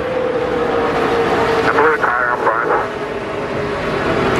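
NASCAR Cup stock cars' V8 engines running at speed, one steady engine note falling slowly in pitch over the first two seconds.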